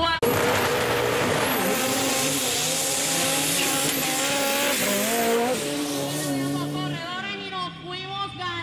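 Two off-road 4x4 trucks racing side by side on a dirt track. Their engines rev hard with pitch rising and falling, over loud tyre and dirt noise. The engine noise thins out near the end.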